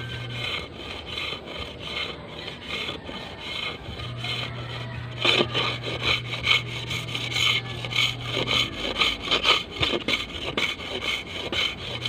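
Knife blade shaving a bamboo strip in repeated scraping strokes, whittling it thinner so both wings of a kite's curved spar come out even. The strokes get louder about five seconds in.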